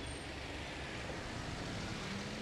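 Steady street traffic noise from cars and a pickup moving slowly along a street.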